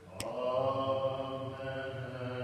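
A voice singing a slow, chant-like melody in long held notes; a new phrase begins just after a short pause at the start, with a sharp click just after it.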